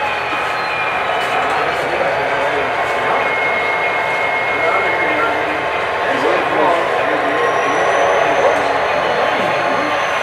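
Indistinct chatter of several people talking at once, with a few thin steady high tones running underneath.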